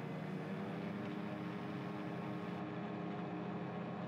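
AutoGyro Cavalon gyroplane's turbocharged Rotax 915 iS engine and pusher propeller running steadily under takeoff power during the takeoff roll, heard from inside the cockpit as a steady, even drone.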